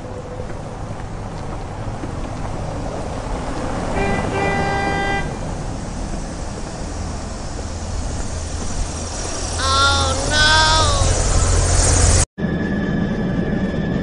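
Toy auto-rickshaw's plastic wheels rolling and rumbling on concrete, growing louder after the middle. A horn-like toot about a second long sounds about four seconds in, and two short wavering tones come near ten seconds. The sound cuts off abruptly shortly before the end.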